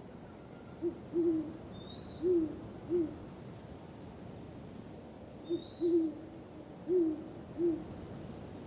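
An owl hooting: two matching series of four low hoots, about five seconds apart, each with a short high chirp among them.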